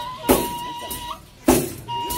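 Traditional folk music: a high wind instrument holds a melody with small stepping ornaments over a deep drum struck twice, about a second and a quarter apart.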